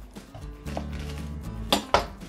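Kitchen knife handled on a plastic cutting board while a vacuum-sealed steak package is opened: a light tap about three quarters of a second in, then a sharp clack near the end as the knife is set down on the board.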